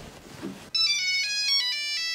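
Mobile phone ringtone: a loud electronic melody of stepped, held notes that starts suddenly under a second in, after faint rustling.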